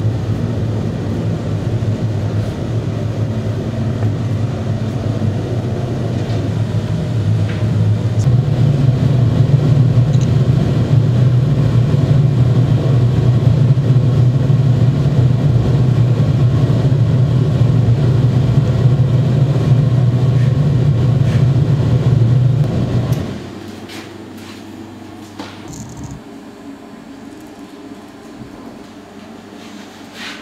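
Gas-fired crucible furnace burner running with a loud, steady low rumble that swells slightly about eight seconds in, then cuts out suddenly about 23 seconds in as the burner is shut off, leaving a much quieter room with a few faint knocks.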